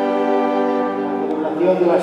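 A choir's hymn ending on a long held chord that fades about a second in. A man's voice starts speaking near the end.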